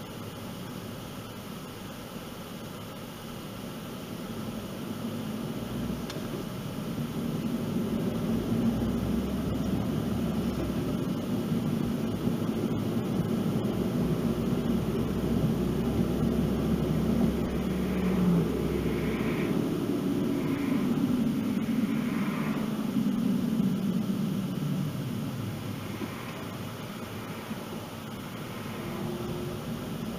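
Car cabin noise while driving: a steady hum of tyres and engine that grows louder from about four seconds in, holds, and eases off near the end.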